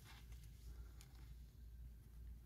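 Near silence with faint sliding of Panini Prizm baseball cards being flipped through by hand, and one soft click about halfway through.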